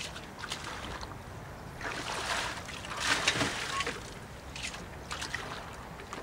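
A bucket dipped into lake water beside a small boat and tipped out again: water sloshing and gushing, loudest about two and three seconds in, with small knocks against the boat.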